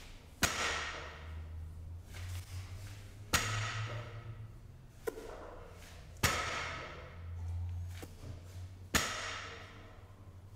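Loaded deadlift barbell set down on the gym floor between reps, four times at about three-second intervals. Each touchdown is a sharp knock with a short ringing rattle from the weight plates.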